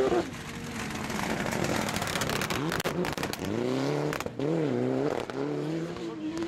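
Rally cars on a tarmac stage: a Porsche 911's engine falls away at the start. Then the next car, a Mitsubishi Lancer Evolution, comes closer, its engine rising and dropping in revs through gear changes, with a few sharp pops and cracks.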